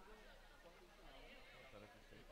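Near silence with faint, distant voices.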